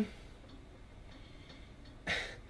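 Quiet room tone in a pause between speech: a faint steady low hum with light hiss.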